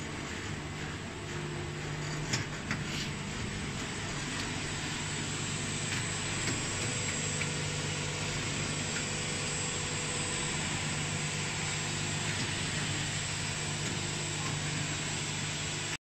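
Plastic packing-net extrusion machine running steadily, a continuous motor hum over broad mechanical noise. Two short sharp clicks come about two and a half seconds in.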